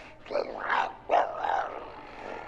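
A zombie's growling voice from the horror film being watched: three growls in quick succession, the last one longest.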